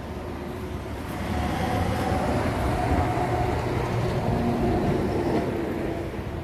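A steady low mechanical rumble with a faint hum in it, swelling about a second in and easing off near the end, like a heavy vehicle or train passing.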